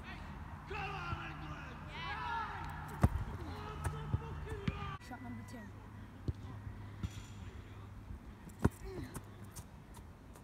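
Two sharp thuds of a football being kicked on grass, about three seconds in and again near the end.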